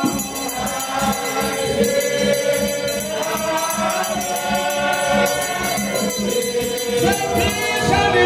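Spiritual Baptist congregation singing a gospel hymn together, led by a man singing into a microphone, over a steady rhythmic beat.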